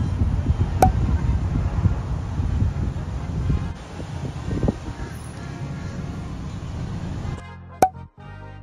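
Wind buffeting a phone microphone outdoors, a loud, uneven low rush with street traffic behind it. Near the end it cuts to quieter background music.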